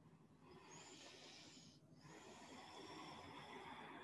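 Faint breathing of a person holding a yoga pose: one long, airy breath lasting about a second and a half, a brief pause just before the two-second mark, then a second long breath.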